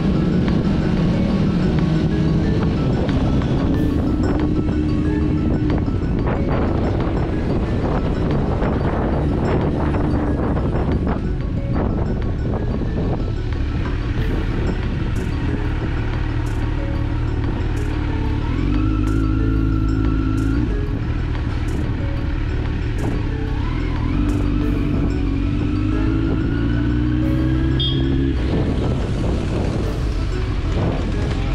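Motorcycle ridden in traffic: engine and wind noise, with the engine pitch rising a few times in the second half as it accelerates. Music plays over it throughout.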